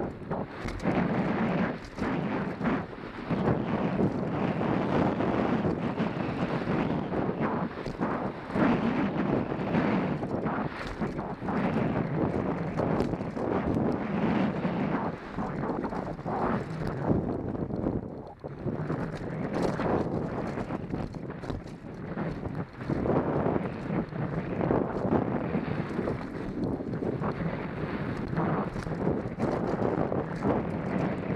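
Wind on the microphone over a mountain bike descending fast on a dry, loose, rocky trail: steady tyre rumble on dirt and stones, broken by frequent clattering knocks and rattles from the bike over rough ground.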